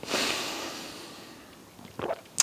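A man's long breathy exhale after a sip of whiskey, starting abruptly and fading away over about a second and a half.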